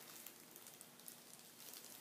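Near silence, with a faint crackle from thin plastic gloves as hands pull apart a small fish.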